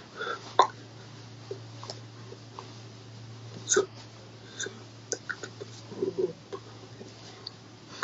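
Scattered soft clicks, taps and brief mouth noises from a person signing, with hands meeting and lips moving, over a steady low hum. The sharpest click comes near the middle.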